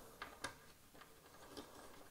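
Near silence with a few faint, short clicks as metal AM5 cooler standoffs are screwed in by hand on a motherboard.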